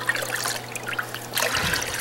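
Evapo-Rust solution pouring and trickling from the pipe ends of an exhaust header as it is lifted out of the soak tub, splashing back into the bath.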